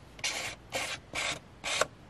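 A homemade ink dauber made from an old glue stick rubbed across the edge of a paper book cover, about five quick scratchy strokes. The edges are being inked darker to hide the white cut edge of the paper.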